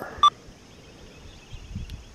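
A single short electronic beep from the XP Deus 2 metal detector's remote control as a key on its keypad is pressed, about a quarter second in. A faint click follows near the end.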